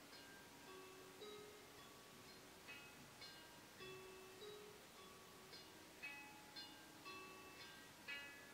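Faint, slow background music of soft, ringing notes struck one after another, a few each second, in a chime-like, plucked sound.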